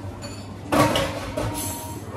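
Kitchen clatter: a sudden loud scrape-and-knock about three quarters of a second in, fading over half a second, with a smaller knock and a brief high squeal after it.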